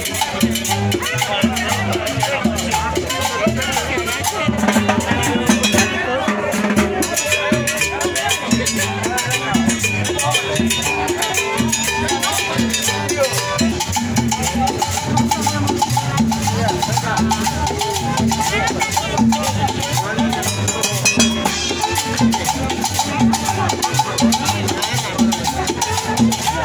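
Live Latin dance music from a small band, with conga drum and saxophone over a steady beat, and a long held note from about halfway in.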